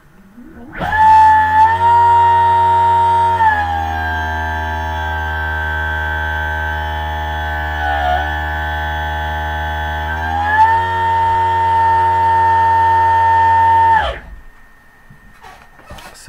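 Electric motor on a VESC-firmware PV 24F controller spinning up to full throttle with a loud, high electrical whine rich in overtones. The pitch steps down about 3.5 s in and back up about 10.5 s in, and the whine stops abruptly near 14 s. The difference in pitch shows how much extra speed MTPA's injected negative current adds above the motor's base speed.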